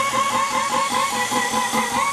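Abrasive cutoff wheel grinding through metal bar stock: a steady rasping hiss with a whine that wavers slightly in pitch as the wheel bites.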